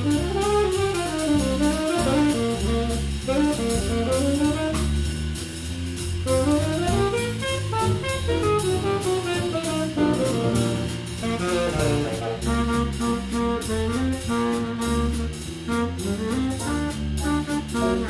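Small jazz combo playing: a saxophone spins out a winding line of quick up-and-down runs over a moving bass line and drum kit with steady cymbal ticks.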